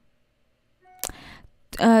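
Near silence, then, about a second in, a brief faint tone and a click followed by a soft breath at the microphone, leading into a spoken 'uh'.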